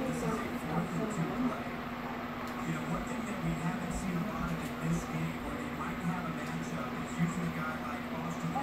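Indistinct voices from a television playing in the room, over a steady low hum.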